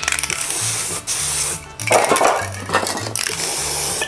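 Aerosol spray-paint can hissing in several bursts as paint is sprayed into a sponge, over background music with a steady bass line.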